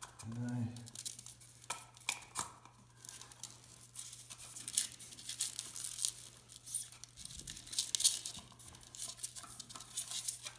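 Plastic-sheathed Romex electrical cable crinkling and rustling as it is pulled by hand through a plastic electrical box: a busy run of short scratchy crackles that starts a few seconds in and is thickest near the end.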